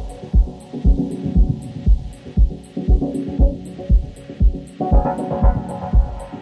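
Dub techno track: a steady four-on-the-floor kick drum at about two beats a second, short hi-hat ticks between the kicks, and held, echoing chords; a brighter chord comes in about five seconds in.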